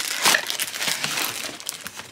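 Cardboard packaging rustling and scraping as a white product box is lifted out of a cardboard shipping box: an irregular run of crinkles and scuffs.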